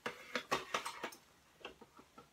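A quick run of light plastic clicks and taps as small packaged items are handled against clear plastic organizer trays, thinning to a few faint ticks after about a second.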